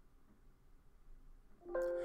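Software collision-warning bell: a chime with several steady pitches rings out near the end, after near silence. It signals that interference between moving parts has been detected during the mechanism playback.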